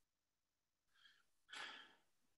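A man's faint breathing during a pause in speech: a short, soft breath about a second in, then a longer, louder sigh-like breath near the end.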